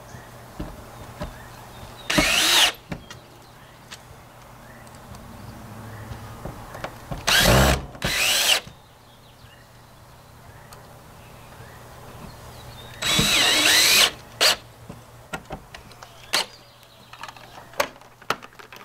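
Bostitch cordless drill/driver run in four short bursts with a rising whine, the last the longest, with small clicks between. It is driving screws to fasten a freshwater fill hatch to the bus's steel side.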